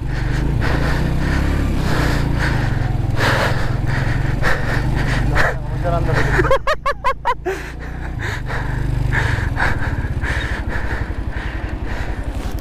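BMW G310GS single-cylinder engine running at low speed up a rough, rocky dirt track, with small knocks from the bike jolting over stones. The engine note drops away briefly about six and a half seconds in, then picks up again.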